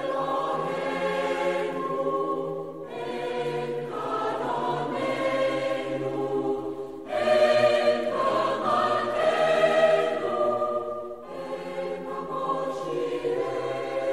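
Choral music with orchestra: a choir sings long sustained chords that change about every four seconds, swelling louder in the middle.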